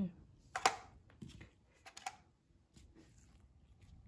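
A few light clicks and taps of small derailleur cage parts being handled on a kitchen scale, scattered through the first two seconds, followed by faint room tone.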